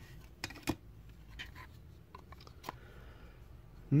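Light plastic clicks and rubbing as a clear plastic One-Touch card holder is handled and a thick relic card is pushed into it, a few sharp clicks standing out, the loudest about a second in; the card is too thick for the holder.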